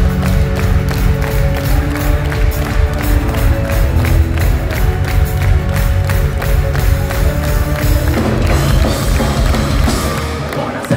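Power metal band playing live and loud, with drums, electric guitar and bass guitar, and no vocals. The music changes about eight seconds in.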